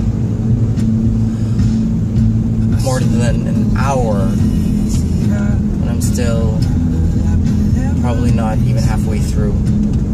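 Steady low engine and road rumble inside a moving car's cabin. From about three seconds in, a man's voice sings along over music.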